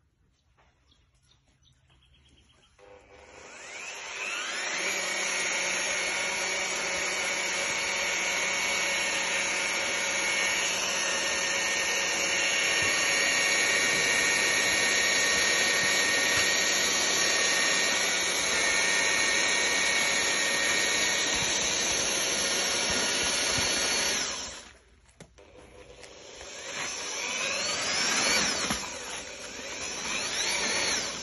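Handheld electric paddle mixer churning a tub of hemp hurd, lime and water for hempcrete. It spins up about three seconds in, runs steadily, stops briefly near the end and starts again.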